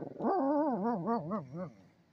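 Small dog giving a drawn-out, yodelling bark-howl about a second and a half long, its pitch wavering up and down several times before it breaks off.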